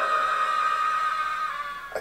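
A long, high-pitched scream sound effect from the animated horror story, held on one note, sinking slightly and fading out near the end.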